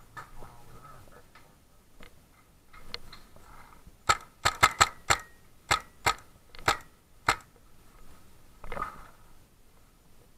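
Paintball fire: a rapid, uneven string of about nine sharp cracks over some three seconds, starting about four seconds in. A shorter rustling burst follows near the end.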